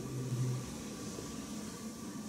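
Faint room tone with a steady hiss in a pause between spoken phrases, with a brief low hum in the first half-second.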